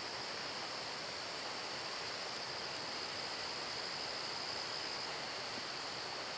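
Night insect chorus: a steady high-pitched trill with a faint, fast, even pulsing above it, over a low background hiss.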